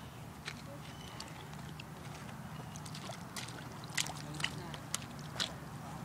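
Child's rubber rain boots stepping through shallow puddle water, a few faint sloshing splashes that come more often in the second half.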